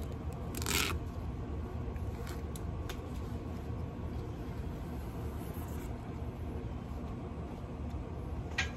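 Handling noise from a fishing rod and its packaging: a short scraping rustle about a second in, then a couple of faint light clicks, over a steady low rumble.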